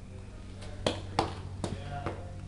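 Three sharp footsteps on a bare concrete floor, about a third of a second apart, over a faint steady low hum.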